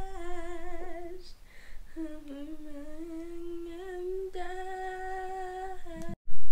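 One voice humming or singing long held notes with a slight waver in pitch. It breaks off briefly about a second in, then holds again and steps up to a higher note past the middle.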